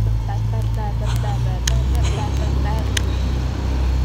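Young women's voices chattering and laughing, indistinct, over a steady low rumble of road traffic; the voices fade out about three seconds in while the rumble carries on.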